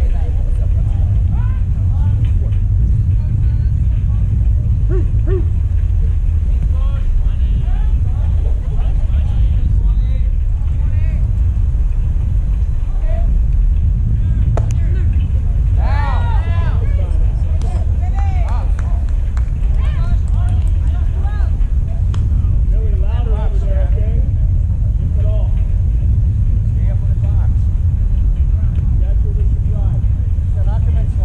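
Scattered shouts and calls from players and coaches across a baseball field, with one loud, high shout about halfway through, over a steady low rumble.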